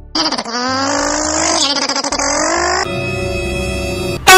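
Background music: held tones over a bass line that steps between notes, turning to a buzzier tone about three-quarters of the way through.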